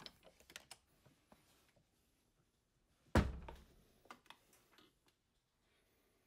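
A door bumps shut with a single thud about three seconds in, among faint scattered clicks and rustles of handling.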